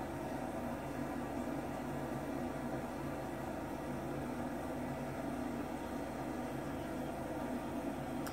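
Steady low hum under an even hiss, with no change or sudden sound.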